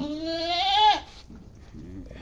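A goat in labour bleats once: a loud, about one-second call that rises in pitch and cuts off suddenly.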